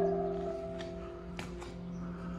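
Background music: a soft instrumental piece of held notes, with a new note struck at the start and sustained over a steady low note.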